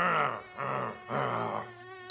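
Three low groans in a row, each a drawn-out voice-like sound with a low base pitch, the last the longest.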